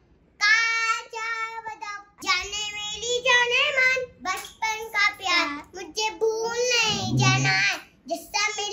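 Young children singing a song unaccompanied, in short high-pitched phrases.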